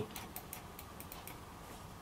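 Faint light plastic clicks from a Genius XScroll wired computer mouse being handled, a quick irregular run of them in the first second and a half.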